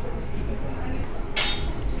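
Chopsticks clink once against a small ceramic dish, a sharp ringing tick about one and a half seconds in, over a steady low background hum.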